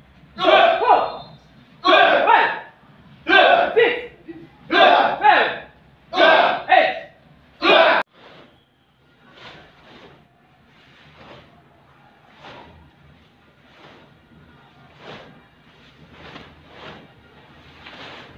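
A taekwondo class shouting in unison with each punch of a drill, one loud group shout about every one and a half seconds. The shouts cut off suddenly about eight seconds in, and fainter shouts follow in the same rhythm.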